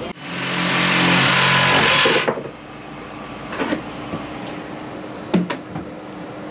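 Cordless reciprocating saw cutting through PVC drain pipe. Its motor comes up to speed at once, runs loud for about two seconds and stops abruptly. After it, a quieter steady hum runs on, with a couple of light clicks.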